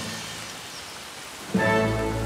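Steady hiss of rain falling on rainforest leaves, under soft background music. A louder sustained musical chord comes in about three-quarters of the way through.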